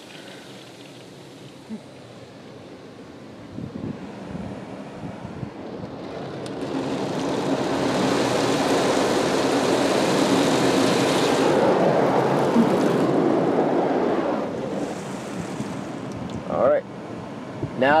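Touchless automatic car wash spraying the car, heard from inside the cabin: a soft hiss that swells about six seconds in to a loud, even rush of spray hitting the roof and glass, holds for several seconds, then dies back down.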